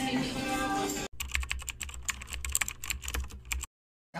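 Keyboard-typing sound effect: a quick, irregular run of clicks over a low bass pulse, starting abruptly about a second in and cutting off shortly before the end. Before it, a second of voices and background noise.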